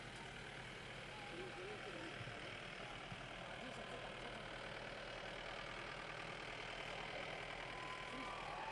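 Outdoor crowd ambience: faint, indistinct voices over a steady noise haze, with vehicles running in the background.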